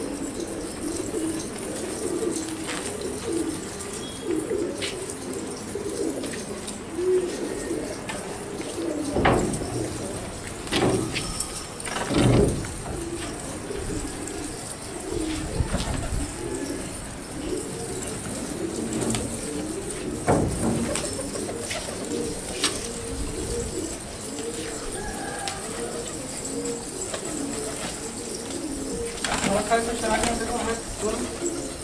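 A large flock of domestic fancy pigeons cooing together, a continuous overlapping murmur of many coos. Several louder low thumps come between about a third and two-thirds of the way in.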